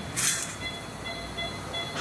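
Operating-room patient monitor beeping quickly, about two to three short beeps a second, as it follows an infant's fast heart rate. Under it is a steady equipment hum, and there is a short hiss about a quarter second in.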